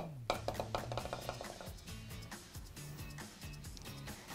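Quiet background music with low sustained bass notes. Right at the start comes one sharp tap: a putter striking a mini-golf ball.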